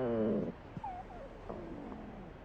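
Hungry stomach growling: one long pitched rumble that stops about half a second in, then a couple of faint small gurgles, taken as the unborn baby asking for food.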